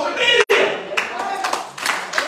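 A preacher's raised voice, then, after a brief cut in the sound about half a second in, hand clapping from the congregation mixed with voices.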